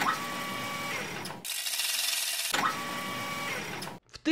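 Edited-in transition sound effect for the end of a sponsor break, mechanical and machine-like, with a faint steady tone running through it. About a second and a half in it gives way to a second of plain hiss, then returns and cuts off just before the end.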